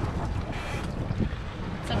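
Wind on the microphone over open sea beside a boat: a steady low rumble with a faint hiss.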